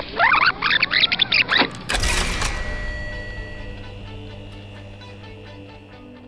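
A tape-rewind sound effect: sped-up, warbling audio sweeping up in pitch for about a second and a half. About two seconds in, a sudden musical hit rings on and slowly fades as a title sting.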